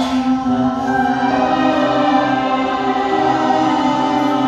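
A woman singing long held notes into a handheld microphone, with music behind her.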